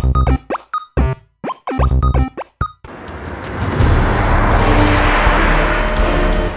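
Short, stop-start bursts of music broken by brief silences. From about three seconds in, a Volkswagen Eos drives past on the road, its tyre and engine noise swelling and then holding.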